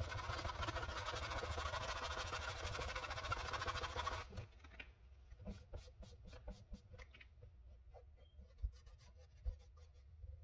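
Sandpaper scratching back and forth over the plastic body shell of a 1/14-scale RC Lamborghini Huracan model. The scratching stops abruptly about four seconds in, leaving only faint scattered clicks and taps.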